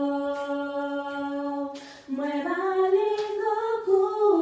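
Unaccompanied group of voices singing a gospel song into microphones. A long note is held, breaks off briefly about two seconds in, then a new phrase comes in and rises.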